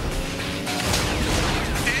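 Animated-series soundtrack: dramatic score music mixed with sci-fi weapon fire and impact effects, with falling zapping sweeps about halfway through.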